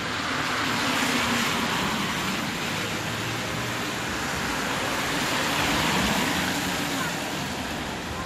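Street traffic: cars passing with a steady tyre hiss that swells about a second in and again near six seconds.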